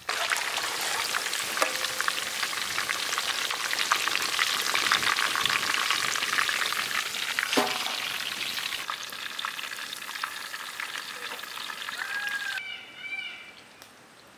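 Battered chicken pieces deep-frying in hot oil in a large wok: a dense, steady crackling sizzle, with one sharp knock about halfway through. The sizzle then eases and cuts off near the end.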